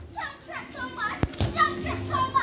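Children's high voices shouting and calling out during a street football game, with one sharp knock a little over a second in, like a kick of the ball.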